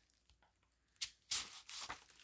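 Paper envelope rustling as a greeting card is slid out of it: a sharp click about a second in, then a short rustle and a softer one near the end.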